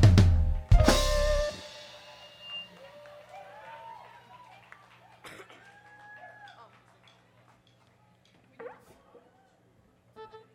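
A live band ends a song: drums and backing stop with a final drum and cymbal hit that rings out for about a second. Then only faint scattered voices over a low steady hum.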